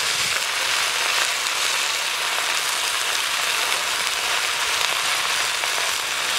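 Chopped sour leafy greens (tok shak) just tipped into hot oil in a wok, sizzling with a steady, even hiss.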